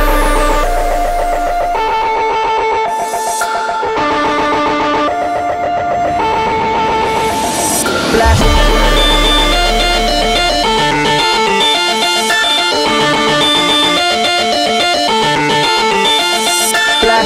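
Electronic music soundtrack with a repeating synth melody; a deep bass comes in at the start and again about eight seconds in.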